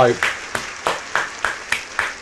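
One person clapping his hands, a quick run of about eight to ten claps at roughly four to five a second.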